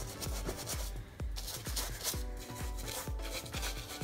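Background music with a steady beat, over the scratchy rubbing strokes of a bristle paintbrush. The brush is wiped on a paper towel and dry-brushed onto an EVA foam prop.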